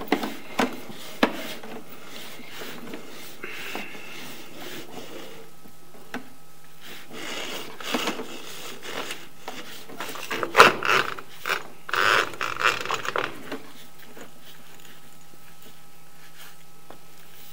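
Sewer inspection camera's push cable being pulled back through the drain pipe, making irregular scraping and rubbing noises with clicks, busiest near the middle and again late. A faint steady hum sets in about a third of the way through.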